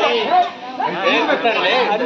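Speech only: high-pitched children's voices chattering over one another, with a brief lull about half a second in.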